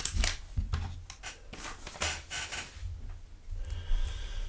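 Crinkling and tearing of a trading card pack's wrapper as it is peeled open, then lighter rustling as the stack of cards is handled. The sound comes in irregular bursts of crackle, busiest at the start and again in the middle.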